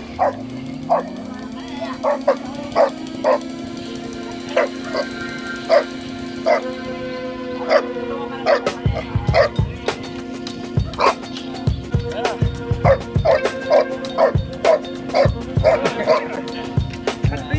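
A dog barking repeatedly in short barks, about one a second at first and coming faster in the second half, over background music with a steady held tone.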